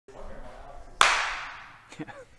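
A single sharp hand clap about a second in, its ring dying away over most of a second in the room.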